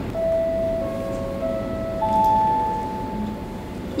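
Airport public-address chime: four bell-like notes struck one after another about half a second apart, each ringing on and overlapping, the last one the highest. It signals that a PA announcement is about to start.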